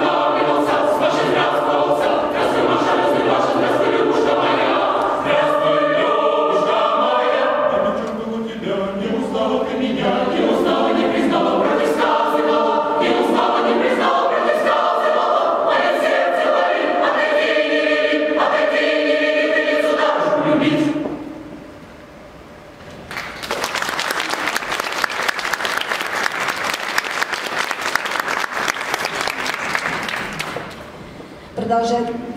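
Mixed adult choir singing in several voices. The choir stops about two-thirds of the way through, and after a brief pause the audience applauds with steady clapping.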